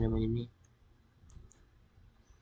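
Two faint computer mouse clicks, about a second and a half in, after a single spoken word at the start.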